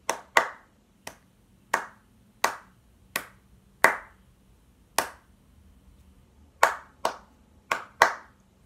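Hands clapping out the rhythm of a line of music: about eleven sharp claps in an uneven pattern, with a pause of more than a second about two-thirds of the way through.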